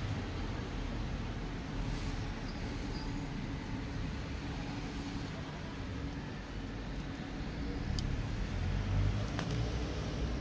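Steady low background rumble with a faint haze of noise, typical of road traffic, and one faint click about eight seconds in.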